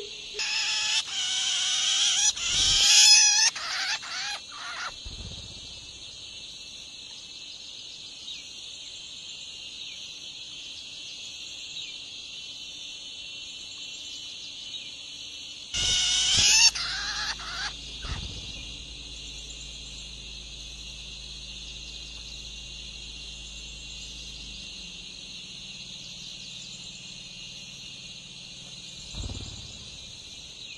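Long-tailed shrike nestlings give shrill, wavering begging calls in two bursts while being fed: a long one lasting several seconds at the start and a shorter one about halfway through. A steady high-pitched background drone runs under them throughout.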